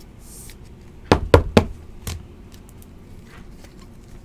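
Three quick, sharp knocks about a quarter second apart, then a softer fourth, from a stack of trading cards being handled and knocked against the tabletop.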